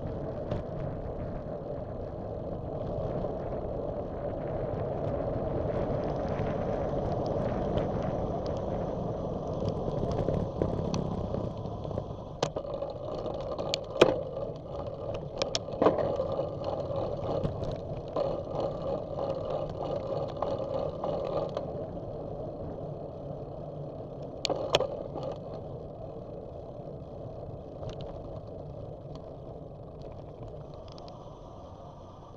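Steady rush of wind and tyre noise from a bicycle rolling over asphalt, picked up by a bike-mounted camera, swelling and then slowly easing off. A handful of sharp clicks and knocks from the bike jolting over bumps come around the middle, and two more come about 25 seconds in.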